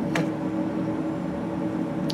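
Steady low mechanical hum with a faint even hiss, and one sharp click just after the start.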